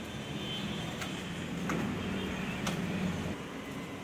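Outdoor background noise with a low engine rumble from a passing vehicle that builds through the middle and drops away a little after three seconds.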